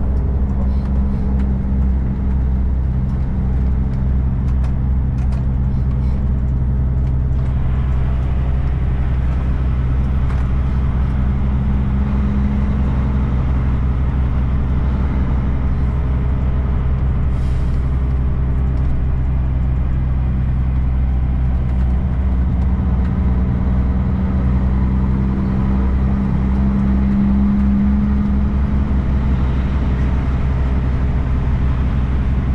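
Kenworth K200 cabover truck's Cummins diesel engine running steadily as the truck pulls away and drives slowly; the engine note rises a little about twelve seconds in and again near the end.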